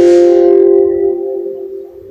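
A bell-like chime struck once, ringing with several steady tones and fading over about two seconds.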